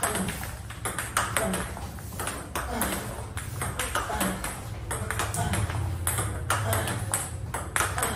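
Table tennis balls clicking off the table and off rubber paddles in a quick, irregular series, as a player loops backspin balls fed one after another during multi-ball practice. A steady low hum runs underneath.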